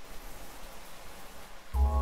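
Steady hiss of rain. Near the end an electronic hip-hop beat comes in with a deep bass and held synth tones.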